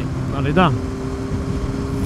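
Yamaha FZR600R inline-four motorcycle cruising at a steady speed, a steady whine under wind rush on the helmet microphone. The rider says the drive chain is audibly bad and needs tightening again. A short vocal sound comes about half a second in.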